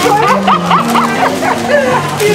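Background music with steady held notes, over which a voice gives a quick run of excited, rising-and-falling yelps in the first second.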